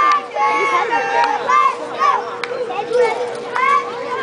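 Several voices chattering and calling out at once, mostly high-pitched, over a steady high hum.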